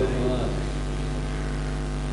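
Steady electrical mains hum from the microphone and amplifier sound system, a low drone with a stack of even overtones.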